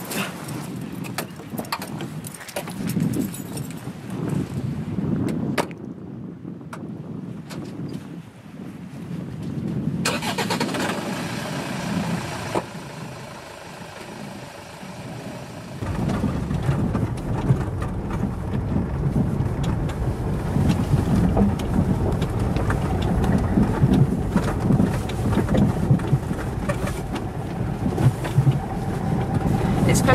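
Land Rover Freelander engine running and driving, heard from inside the car: from about 16 seconds in a louder, steady low rumble as it travels along a rough dirt track.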